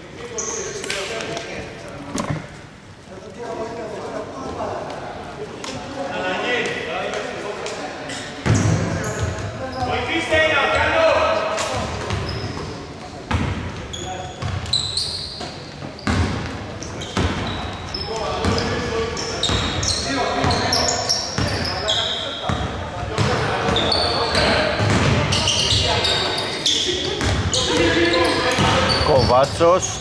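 Basketball game sounds in a large, echoing indoor hall: the ball bouncing on the hardwood court, with players' voices calling out on the court.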